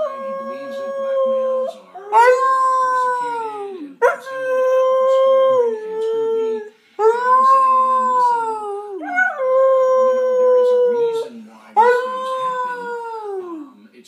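A series of about six long howls, each a couple of seconds, holding steady and then dropping in pitch at the end: a young husky-type dog howling, answering a person who imitates a howl to set him off.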